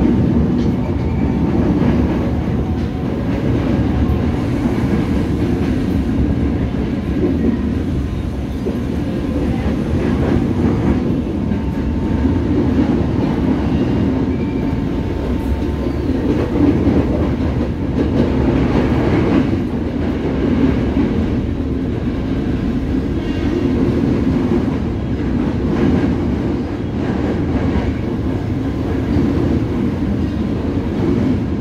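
Tokyo Metro 05 series electric commuter train running along the track, heard from inside the car: a steady running noise of the wheels on the rails.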